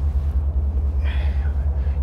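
Steady low rumble of wind buffeting the microphone, with a faint brief hiss about a second in.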